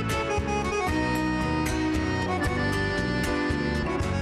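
Chamamé band playing instrumentally: an accordion carries the melody in held notes over plucked guitars.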